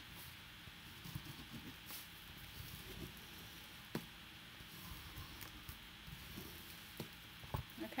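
Faint scraping and rustling of folded brown kraft paper being creased with the back of a pair of scissors used as a bone folder, with a few light clicks and taps scattered through it.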